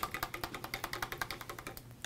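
Quick run of light clicks, about eight to ten a second: a paintbrush being swished clean in a water cup, clicking against its sides.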